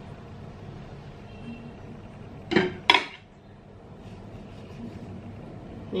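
Two quick clinks of metal cutlery about two and a half seconds in, close together, over a low steady background hum.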